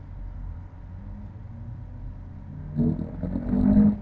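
Low, steady background hum with no other events for nearly three seconds, then a person's voice murmuring indistinct words near the end.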